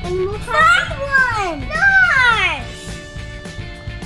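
Children's voices giving three long falling calls in a row, over steady background music.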